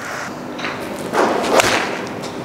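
A golf iron swung at full speed: the club's swish builds and ends in one sharp crack as the clubface strikes the ball, about a second and a half in.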